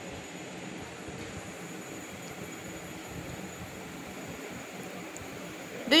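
Steady, even background hiss with no distinct sounds in it; a woman's voice begins at the very end.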